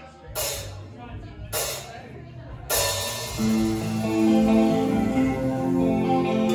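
A live rock band starting a song: three cymbal crashes about a second apart, then about three seconds in the band comes in together, with held guitar and bass notes over the drums.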